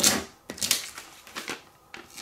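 A plastic vinyl squeegee rubbed across transfer tape over a vinyl decal, with one loud scraping stroke at the start and a few shorter, quieter scrapes after it, and the paper-backed sheet rustling as it is handled.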